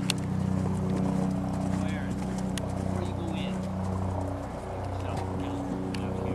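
A horse cantering on a sand arena, its hoofbeats soft and muffled, over a steady low hum, with faint distant voices.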